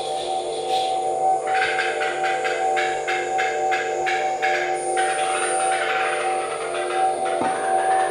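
Live experimental electronic music: a steady drone of several held tones, joined about a second and a half in by a higher, noisy pulsing at about three beats a second that breaks up into a rougher texture near the middle.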